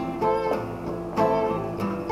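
Acoustic guitar strumming chords in a live song, with two fresh strums: one just after the start and another about a second later, each left to ring.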